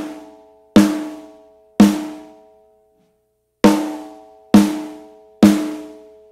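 Metal-shell snare drum played with rimshots, the stick striking rim and head together in one blow, giving a sharp hit like a shot. There are five hits about a second apart, with a pause of nearly two seconds after the second. Each rings out with a pitched ring for about a second.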